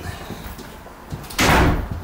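Interior door being pushed open: quiet at first, then a loud noisy swish-and-knock lasting about half a second, about one and a half seconds in, as the door swings wide.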